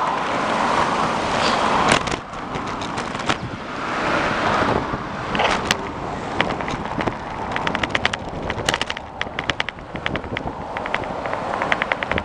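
Wind rushing over the microphone of a moving bicycle, with car traffic close alongside. In the second half there is a run of quick ticks, a few a second at first and then faster.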